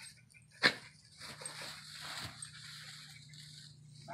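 Two dogs nosing and pawing through loose straw while hunting for a hidden rat: a dry, uneven rustling with small scuffs and snuffles.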